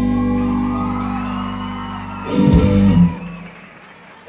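Live blues-rock band of electric guitars, bass guitar and drums holding a sustained closing chord. The band hits it again about two and a half seconds in, then lets it ring out and fade.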